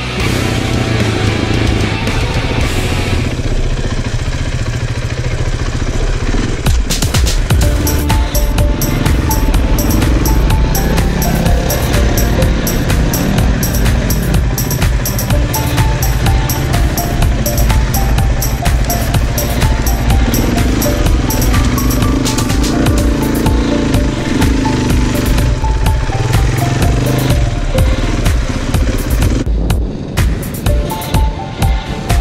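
Rock music soundtrack; a steady drum beat comes in about six seconds in. A dirt bike engine can be heard beneath it.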